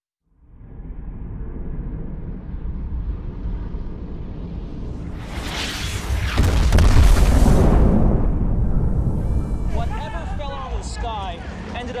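Cinematic sound effects: a deep rumble swells up from silence into a loud booming blast with a hissing rush, loudest about six to eight seconds in, then dies away as voices come in near the end.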